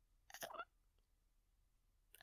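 Near silence, broken once, about a third of a second in, by a brief catch of a woman's voice: a small nervous vocal sound, not a word.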